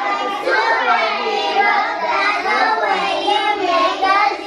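A group of preschool children singing together in unison.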